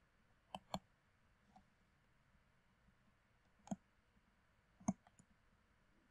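Computer mouse button clicks, sparse and sharp, over near silence: a quick pair about half a second in, then single clicks near four and five seconds, with a few fainter ticks.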